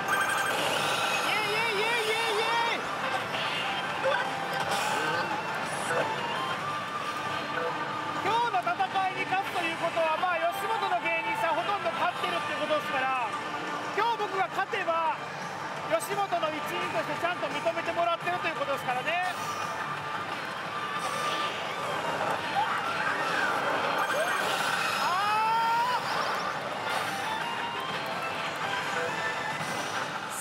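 Steady din of a pachinko hall: electronic music and sound effects from pachislot machines, including the Hokuto no Ken Shura no Kuni machine being played, with voices mixed in throughout.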